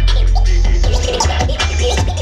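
A turntablist scratching a vinyl record on turntables over a beat with a heavy bass line, the scratches quick sweeps up and down in pitch.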